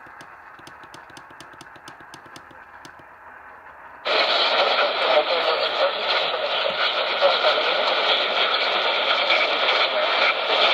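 A portable radio: a rapid, even run of faint clicks over low hiss, then about four seconds in, loud steady radio static comes on suddenly and keeps going.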